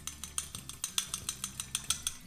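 A metal fork whisking sauce in a small glass, clinking rapidly and regularly against the glass, several strikes a second.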